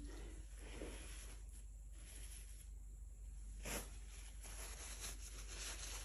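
Quiet room tone with a low steady hum and one brief faint click a little past halfway.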